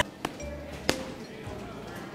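Boxing-glove punches landing on a striking pad: two short thuds about two-thirds of a second apart, the second louder, over music with a steady bass.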